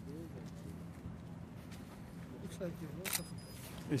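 Faint voices of people talking, over a steady low hum, with a short rustle about three seconds in.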